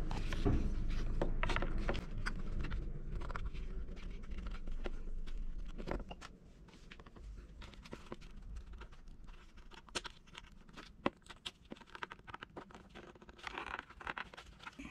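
Hands working a plastic car console panel: scraping and handling noise, then a run of small sharp clicks and ticks in the second half.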